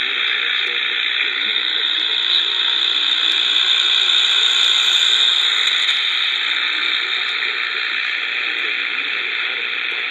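Eton Elite Mini AM/FM/shortwave radio's speaker playing loud shortwave static, with a weak station at 13.740 MHz faintly underneath. The hiss swells a little midway, as the signal fades in and out.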